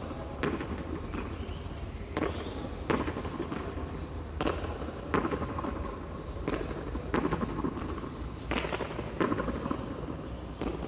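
Handball (frontón a mano) rally: a ball struck by a bare hand and cracking off the concrete front wall, with sharp smacks coming in pairs about every one to two seconds.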